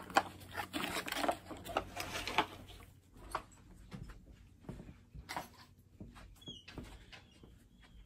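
Cardboard and paper packaging rustling and tapping as small accessories are handled, busiest in the first two or three seconds, then scattered fainter clicks.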